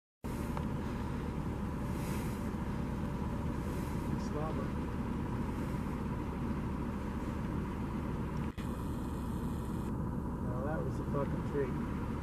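Vehicle engine idling with a steady low rumble, with quiet voices near the end.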